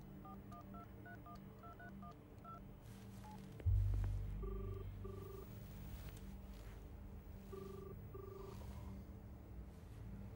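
Mobile phone keypad tones beeping as a number is dialled, about eleven quick beeps, then the ringback tone of the call heard through the phone: two double rings a few seconds apart. A sudden low rumble comes in just before the first ring and slowly fades, over a steady low hum of the car cabin.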